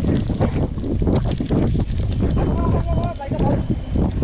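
Mountain bike rolling fast over a rough lane: wind buffeting the handlebar-mounted action camera's microphone over a steady rumble from the tyres, with frequent rattling clicks as the bike bounces over the surface.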